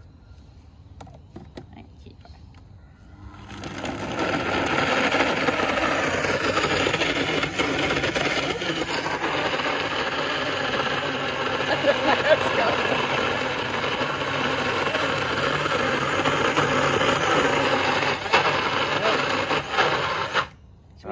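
NutriBullet personal blender motor starting about three and a half seconds in and running steadily while it purées raw salmon with its skin.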